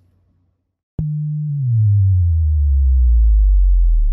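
A loud, low electronic tone that starts suddenly with a click about a second in and glides steadily downward in pitch, a deep sub-bass drop sound effect.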